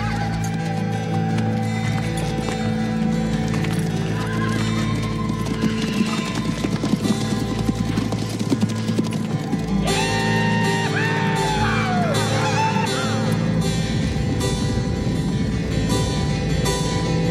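Horses whinnying and hooves clip-clopping as riders set off, heard over steady background music. The hoofbeats come through most densely in the middle.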